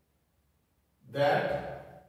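Near silence for about a second, then a man's voice briefly: a short, breathy spoken sound.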